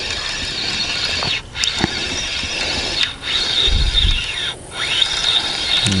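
Spinning reel's drag giving line as a hooked fish pulls against the rod, a steady high buzz with three short breaks.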